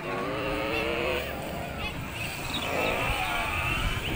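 High-pitched, drawn-out voices calling out with no clear words, over a steady background hum.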